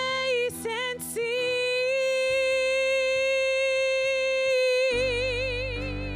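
A woman singing a worship song with acoustic guitar and bass: a few short notes, then one long held note that ends in vibrato. The guitar and bass come back in full about five seconds in.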